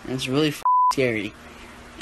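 A teenage boy talking, with one word masked by a short, steady, single-pitch censor bleep about two-thirds of a second in.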